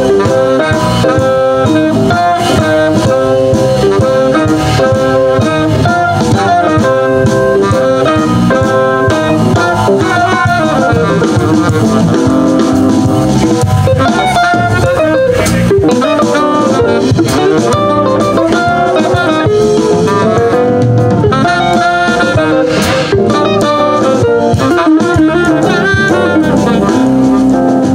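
Live jazz band playing: saxophone over electric guitars and drum kit, with a steady groove throughout.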